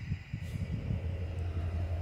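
Steady low hum and rumble from a freight train on the nearby track.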